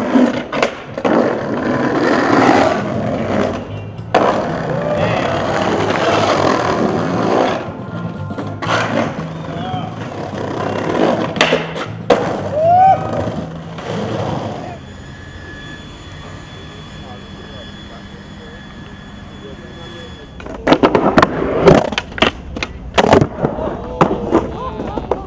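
Skateboards on brick and tile banks: wheels rolling over brick paving, with the clacks and slaps of tail pops, landings and truck hits. After a quieter stretch in the middle, a quick run of sharp board slaps and clacks comes near the end.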